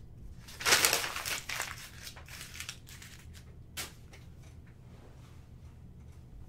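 Packaging being crumpled by hand: a loud burst of crinkling about a second in, lighter crackles for the next couple of seconds, and one sharp crackle near four seconds.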